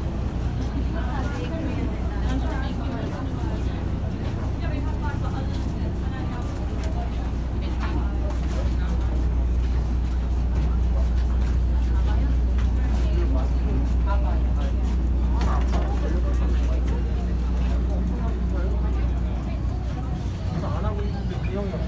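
Steady low drone of a docked passenger ferry's engine, a little louder in the second half, with a crowd of passengers talking as they file off the boat.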